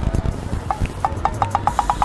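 A quick run of short, high-pitched tones, about six a second through the second half, over low rumbling thumps.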